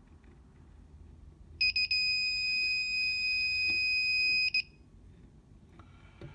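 Klein Tools ET300 circuit breaker finder receiver sounding a steady, high-pitched electronic tone for about three seconds, starting about a second and a half in with a brief break just after it starts, then cutting off abruptly, while it is swept over the breaker panel in its learning pass.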